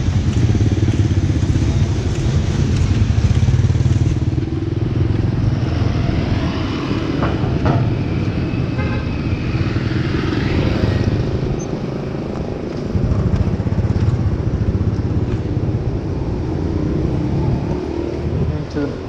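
Street traffic dominated by motorbikes, their small engines running and passing close by as a steady low drone.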